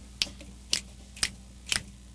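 Finger snaps on a steady beat, about two a second, four in all, setting the tempo before the singing comes in.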